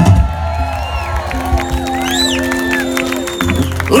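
Live band music with long held notes over a steady bass, while a crowd cheers and whoops.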